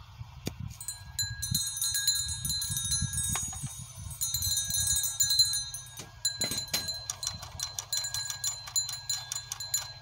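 Metal chimes ringing with high, sustained tones that start about a second in and are struck afresh around four and six seconds in, with clicks and rattles among them, over a low wind rumble on the microphone.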